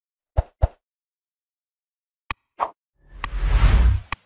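Sound effects of a like-subscribe-notify button animation: two quick pops, then a click and another pop, then a whoosh with a deep rumble swelling over the last second, with a click in it.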